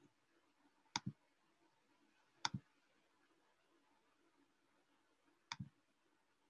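Three double clicks of a computer mouse, about a second in, at two and a half seconds and near the end, over near silence.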